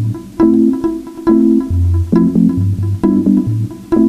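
Cello played pizzicato in a repeating riff of about two plucked notes a second over low bass notes, layered through a loop station.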